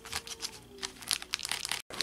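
Shiny gold trading-card packs crinkling and clicking against each other in their cardboard box as a hand pulls one out: a quick, irregular string of small crisp clicks.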